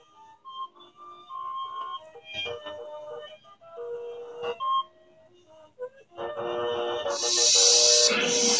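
An electronic tune plays from the RC riverboat model's onboard sound module. About six seconds in, the model's engine-noise sound effect switches on, and a loud hiss swells over the music near the end.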